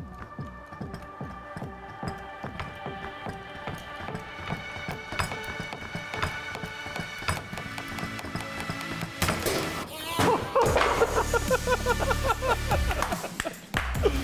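Background music with a steady beat. About nine seconds in comes a sudden loud burst as a SharkBite push-to-connect fitting blows off pressurised PEX pipe and sprays hydraulic fluid. Men laughing and shouting follow.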